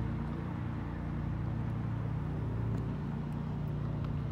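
A steady low engine drone running at constant speed, over a haze of outdoor background noise.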